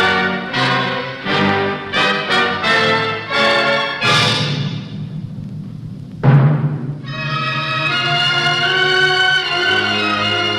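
Dramatic orchestral trailer music with timpani and brass. A run of short, punched chords gives way to a swelling chord that fades out. A sudden loud low hit comes about six seconds in, followed by a sustained full chord.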